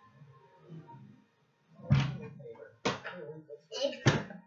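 A heavy thump about two seconds in, then sharp knocks and the closet door being opened from inside near the end.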